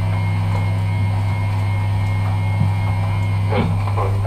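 A steady low-pitched drone from the band's amplified instruments, with a faint high whine held above it and a few faint ticks.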